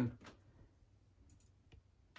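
A man's voice trails off, then a pause of near silence with room tone, broken by three faint, short clicks.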